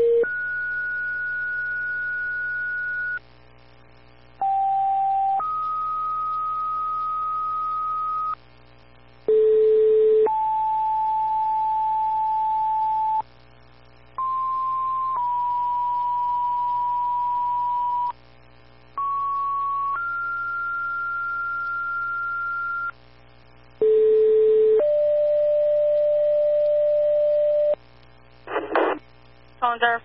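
Fire dispatch two-tone sequential paging tones over a scanner radio feed: six pairs in a row, each a short steady tone of about a second followed by a longer tone of about three seconds at a different pitch, with a second or so of pause between pairs. Each pair alerts one mutual-aid fire department to respond to a second alarm. Near the end comes a brief radio noise burst.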